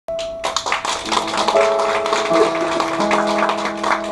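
Piano: a single held note, then sustained chords that change about a second and a half and three seconds in. A fast, dense clatter of short taps runs over it.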